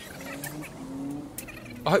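A young child humming two short, steady notes, a contented 'mmm' while eating a pretzel.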